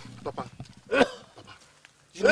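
A short pitched cry that rises and falls in pitch about a second in, with fainter similar cries around it, repeating roughly every second and a half.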